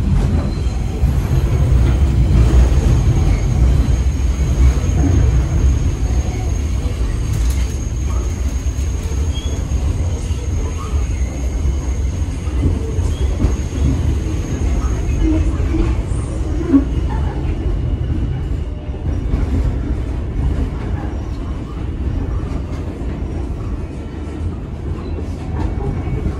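Interior of an R46 subway car running along elevated track: a steady low rumble of the wheels and car body, heard from inside the car. A faint high whine sits over it for the first half.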